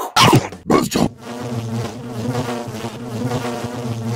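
Cartoon housefly buzzing sound effect for an animated logo: a couple of quick swooping sounds in the first second, then a steady, even buzz.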